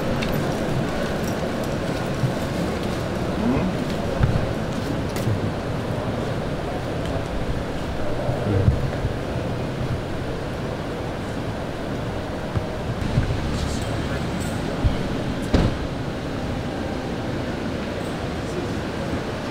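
Steady city street noise with indistinct voices talking in the background and a few short knocks.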